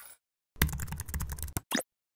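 Computer keyboard typing: a quick run of key clicks lasting about a second, as text is entered into a search bar, followed by one more short sound near the end.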